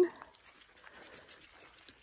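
A spoken word trailing off, then faint steady outdoor background noise close to silence, with a faint click near the end.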